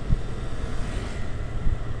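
Riding a Honda Vario motor scooter: the engine and road noise make a steady low rumble, with wind buffeting the camera's microphone.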